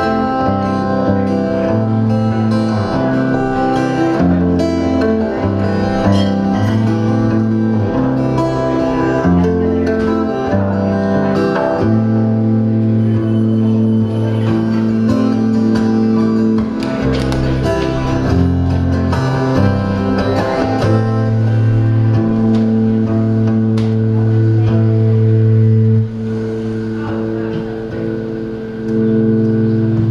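A dreadnought acoustic guitar is played solo, live, in an instrumental passage. It rings with sustained chords over moving bass notes.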